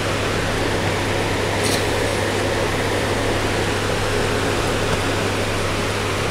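Steady machine noise: a constant hiss over a low, even hum, of the kind an air conditioner or fan makes, with one faint brief tick a little under two seconds in.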